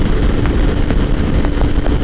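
Wind rushing over the helmet-mounted microphone, with the steady drone of a 2006 Kawasaki Ninja 250R's parallel-twin engine cruising on the freeway.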